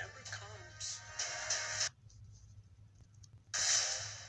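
Movie trailer soundtrack playing back through a speaker: music and dialogue for about two seconds, a quieter stretch, then a loud burst of noise just before the end. A steady low hum runs underneath.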